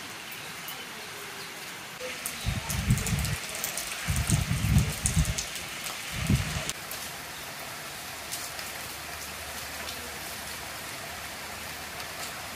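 Steady rain falling, with fine drop patter on standing water and nearby surfaces. Between about two and seven seconds in, a few louder low rumbles rise over it.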